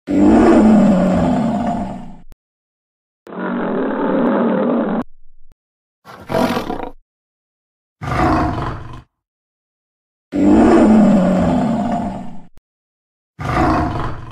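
Lion roaring: six separate roars with short silences between them, the longest at the start and again about ten seconds in. The second roar sounds duller and muffled.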